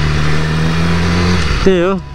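BMW S1000RR inline-four engine running at steady revs while riding, under a haze of wind and road noise. The steady engine note drops away about a second and a half in.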